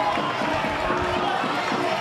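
Background crowd noise at a football ground: a steady murmur with scattered distant voices and calls.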